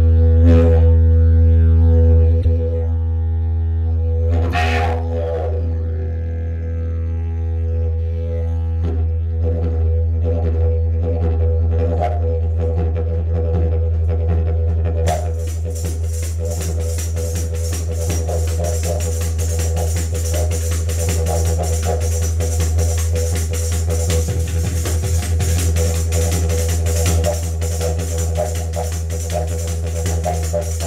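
Didgeridoo played live, holding a loud, steady low drone with shifting overtones and a few sharp accents in the first seconds. About halfway through, a tambourine joins with a steady, fast jingling rhythm over the drone.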